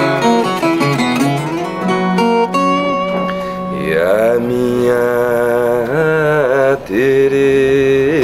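A viola caipira played solo, a run of single plucked notes, then a man's voice comes in about four seconds in, singing long, wavering notes over the strumming.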